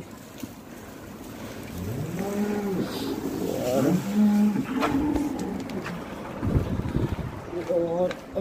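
Cattle lowing: several low, drawn-out calls that rise and fall in pitch, between about two and five and a half seconds in, followed by some low thumping handling noise.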